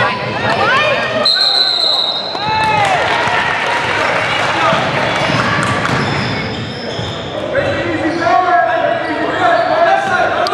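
Basketball game in a gym: sneakers squeaking on the hardwood court and a ball bouncing. A referee's whistle gives one short blast about a second in, and players' voices call out near the end.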